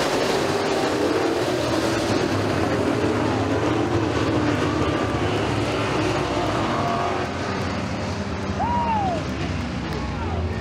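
Engines of several RUSH Pro Mod dirt-track race cars running together as the field comes off the checkered flag. The engine noise eases slightly about seven seconds in.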